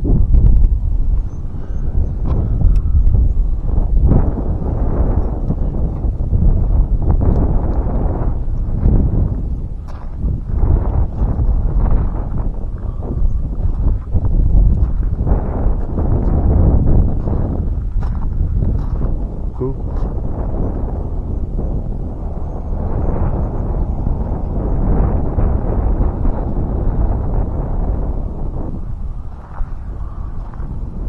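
Wind buffeting the microphone: a loud, low noise that rises and falls in gusts.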